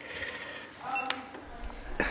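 A short electronic beep and a sharp click about a second in, from a GoPro Hero3 action camera as it is switched on to record.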